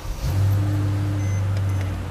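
Mercedes-Benz E-Class convertible's engine starting up and running with a steady low drone, coming in about a quarter second in.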